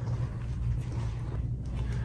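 A steady low background rumble, like room or ventilation hum, with no clear event standing out.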